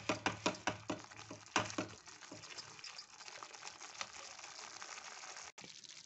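Thick tomato-and-chilli chutney bubbling and spluttering in a non-stick frying pan as it is stirred with a silicone spatula over high heat: it is being cooked down until thick. Quick pops and clicks come thick and fast for the first two seconds, then settle into a fainter sizzle with occasional pops.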